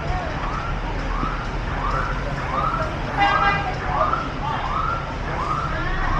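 A short electronic chirp repeating a little under twice a second, each chirp rising then falling in pitch, siren-like, over a steady low hum of background noise.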